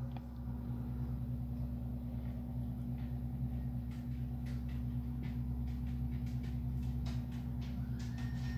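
A steady low hum, with a few faint ticks in the second half.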